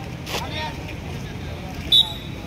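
Outdoor ball badminton match sounds: a brief sharp noise about a third of a second in, voices on the court, and near the end a short, loud, high-pitched whistle blast.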